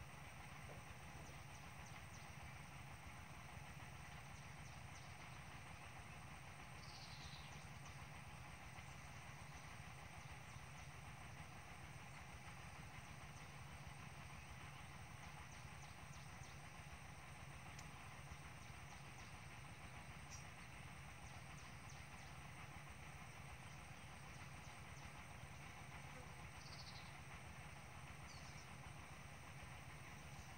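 Near silence: faint steady outdoor background hiss, with a few brief, faint high chirps about seven seconds in and again near the end.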